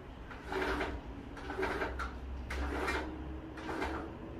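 Combi (zebra) roller blind being worked by hand at its side chain: a run of short scraping strokes, about one a second, as the roller turns and the fabric moves.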